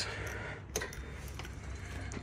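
A single sharp click just under a second in, from the ignition key of a Polaris Slingshot being turned, over a faint low hiss; the engine has not yet started.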